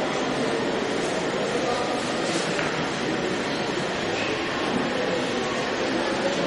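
Audience in a hall applauding steadily, with a few voices faintly underneath.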